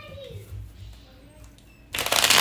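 Quiet handling noises and a brief falling hum from a woman's voice, then, right at the end, a deck of tarot cards starts being shuffled loudly.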